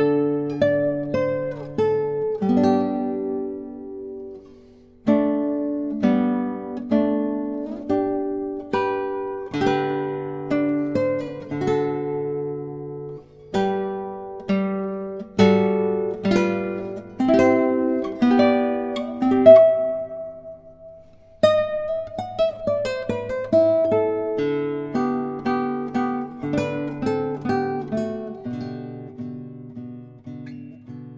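1997 Germán Pérez Barranco 'Señorita' short-scale classical guitar, spruce and maple, played fingerstyle as a solo: plucked melody notes over bass notes and chords in phrases, with brief pauses about five seconds in and again around twenty seconds.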